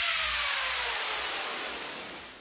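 Electronic falling noise sweep closing a dance-music track: a hissing wash with pitches gliding steadily downward, fading out.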